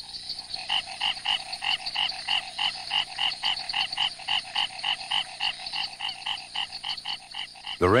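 Male frogs calling in a fast, even series of short croaks, about four or five a second, over a steady high background hum. These are the males' night calls, staking out territories and attracting females at the start of the breeding season.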